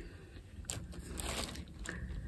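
Quiet pause with a woman's faint breath near the middle; she is hoarse and short of breath.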